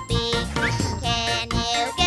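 Upbeat children's song with a jingly, chiming accompaniment and a sung lyric line.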